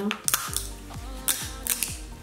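Crab leg shell crunching and snapping in several short, sharp cracks as it is squeezed in a metal crab cracker.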